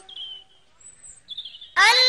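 A child's Quran recitation breaks off into a short pause in which a few faint, high bird chirps are heard. Near the end the child's voice comes back in with a rising held note.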